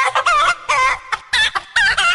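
Chicken clucks pitch-shifted into a quick tune, about five short notes in a row, each bending up and down in pitch. Faint low thumps sit beneath some of the notes.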